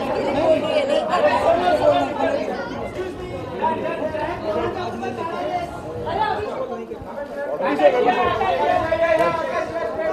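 Indistinct chatter of a group of people talking over one another, with no single voice standing out.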